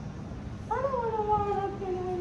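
Domestic cat giving one long meow, starting about a second in; its pitch rises briefly, then falls slowly as the call is drawn out.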